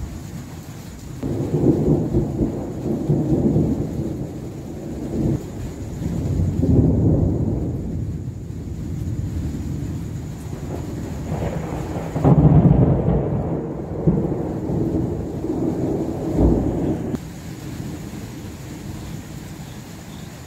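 Thunder rolling in long low rumbles that swell and fade several times. It is loudest about twelve seconds in and dies away a few seconds before the end, over a steady background of rain.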